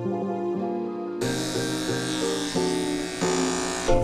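Electric dog clippers buzzing steadily as they trim a poodle mix's curly coat, starting about a second in and stopping near the end, under background keyboard music.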